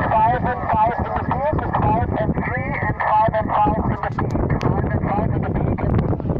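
A distant amateur radio operator's voice received through the Elecraft KX2 transceiver's speaker: single-sideband speech over steady band noise, giving a signal report.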